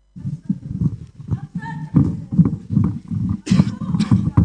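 A person's voice speaking in short, choppy bursts, cutting in suddenly from silence.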